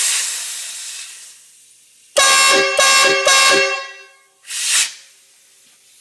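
Train air horns sounding a multi-note chord in three quick blasts, ridiculously loud, with a short ringing tail. Bursts of hissing air come before and after the blasts.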